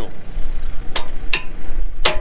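Two sharp metal clicks about a second in, a third of a second apart, as the row-unit drives on a 1970s John Deere four-row planter are switched off by hand, over a steady low rumble.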